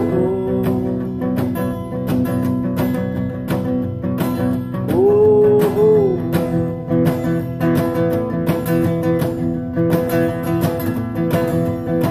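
Strummed steel-string acoustic guitar playing a steady folk-rock accompaniment. It is joined by two held wordless sung notes, one at the start and another about five seconds in.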